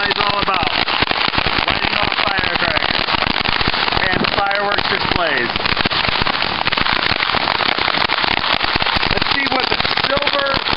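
A string of Chinese firecrackers going off in a fast, continuous crackle of many small bangs, with people's voices calling out over it.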